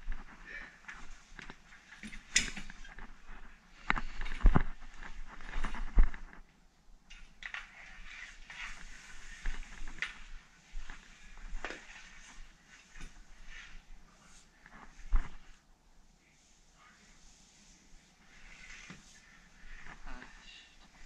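Handling noises: scattered sharp knocks and scuffs of metal snake tongs on a wooden floor, with rustling movement around them, as a black mamba is worked with the tongs. The loudest knocks come about four to six seconds in and again about fifteen seconds in.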